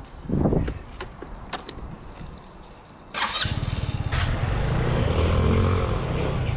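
A Revolt Volta RS7 scooter's 125cc GY6 single-cylinder engine starts suddenly about three seconds in, after a brief noise near the start, then runs with a steady low beat as the scooter pulls away. The rider reckons the fuel feed is unsteady and that the carburettor float probably needs replacing.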